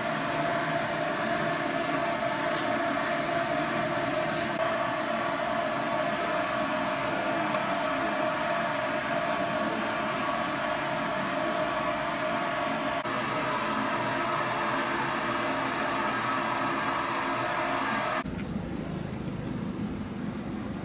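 Steady hum with a high, steady tone running through it: the background noise of a hospital intensive-care room with its equipment running, with two faint clicks a few seconds in. Near the end it cuts to a lower, different background of outdoor noise.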